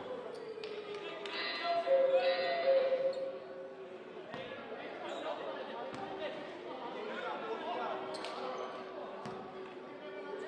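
Basketball bouncing on a hardwood court, with scattered sharp knocks and voices echoing in a large sports hall. A louder stretch of held voices comes about one and a half to three seconds in.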